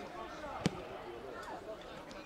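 A football kicked hard: one sharp thud about two-thirds of a second in, with players' voices calling across the pitch.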